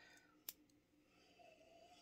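Near silence, with a single faint, sharp click about half a second in.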